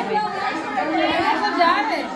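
Several people talking at once: overlapping chatter of a small crowd of voices.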